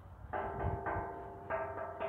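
Solid steel diamond-plate sculpture tapped by hand three times, about half a second apart. Each tap sets the steel ringing with a steady bell-like tone that carries on between the taps.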